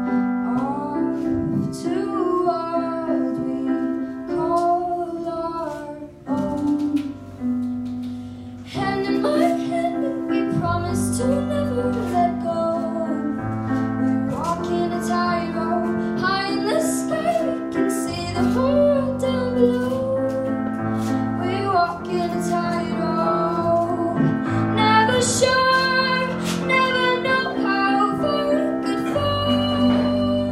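A teenage girl singing a ballad live into a microphone while accompanying herself with held chords on a Yamaha digital piano, with short breaks between phrases.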